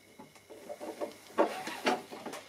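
Handling noise of a Kevlar rudder line being worked into a knot and tightened by hand: a run of short rubbing and scraping sounds, the loudest about one and a half and two seconds in.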